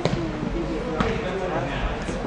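A soccer ball struck on indoor turf: a sharp thud at the start and another about a second in, a fainter one near the end.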